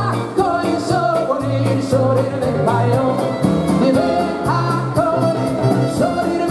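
Live band music with male voices singing: a lead singer and a small male backing choir over a bass line and a steady cymbal beat of about four strikes a second.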